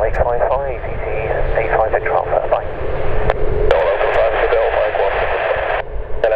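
Air traffic control radio chatter through an airband scanner: narrow, tinny voices that start and stop abruptly as transmissions key in and out, over a low rumble.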